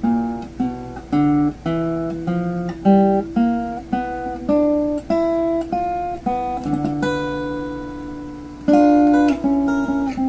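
Archtop guitar fingerpicked with a thumbpick: a blues run of single notes in G, drawn from the pentatonic and major scale, plucked two to three a second over a lower note that keeps ringing. About three-quarters of the way through, a chord is let ring for about two seconds before the notes resume.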